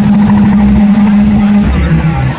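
Eurorack modular synthesizer holding a loud, steady low drone at one pitch over a rumbling bass, with a dense electronic texture above it.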